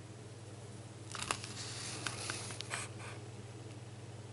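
A comic book page being turned: a dry paper rustle with a few crisp crackles, starting about a second in and lasting about two seconds.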